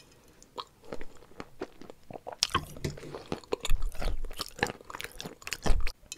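Close-miked chewing and crunching of a mouthful of chalk, wet and crackly. Sparse at first, it grows dense about two seconds in, with two louder, deeper bursts near the middle and just before the end.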